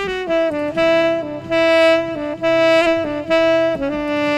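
Saxophone playing a slow melodic phrase of sustained notes, moving from note to note about every half second to second, with brief breaths or dips between them.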